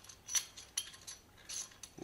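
A few faint, light metallic clicks and clinks from the solid steel clamp block of a microscope's articulated arm being handled, its metal rods and parts knocking together.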